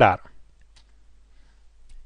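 A man's voice finishing a word, then a quiet pause with a couple of faint clicks, typical of a computer mouse being clicked to switch from a slide to a code editor.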